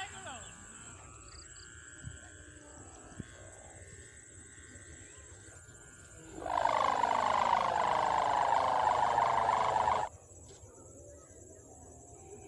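A kite hummer (sendaren) droning for about four seconds in the middle, its pitch slowly falling, then cutting off suddenly. Faint outdoor background before and after.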